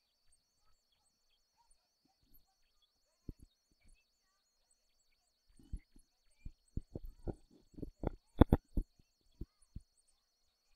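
A quick, irregular run of knocks or taps starting about five and a half seconds in, loudest about eight and a half seconds in. The first half is nearly silent.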